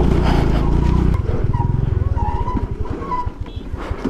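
A TVS Jupiter scooter's 110 cc single-cylinder engine running with the scooter stopped. About a second in it settles to a slow, pulsing idle that gets a little quieter.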